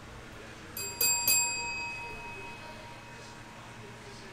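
A small bell struck three times in quick succession about a second in, its ring fading away over a second or so.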